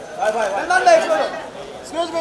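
Several people's voices talking and calling out over background chatter.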